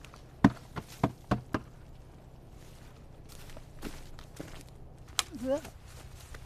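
Dry plant stems and twigs snapping and knocking: five sharp cracks within about a second near the start, then a single crack about five seconds in.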